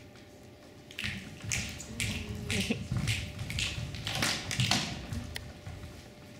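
Footsteps of a group of performers walking on a wooden stage floor, a run of soft thuds about two a second that starts about a second in and dies away near the end.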